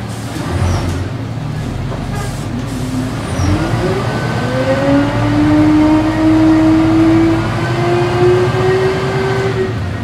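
Volvo B10M bus drivetrain with ZF automatic gearbox heard from inside the cabin, pulling away under power. About three seconds in, a whine rises in pitch and climbs slowly as the bus gathers speed, then drops off sharply near the end as the gearbox changes up.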